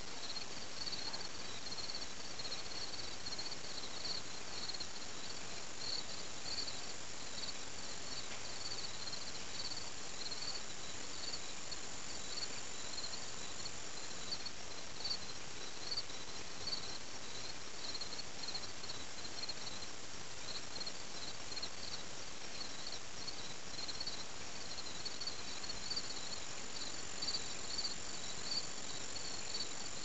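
An insect chorus: short chirps repeating about twice a second, with a steady high-pitched trill that runs for a stretch in the first half and comes back near the end.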